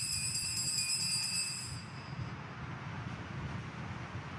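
Altar bells ringing at the elevation of the consecrated host. Their high ringing dies away about halfway through, leaving a low steady hum.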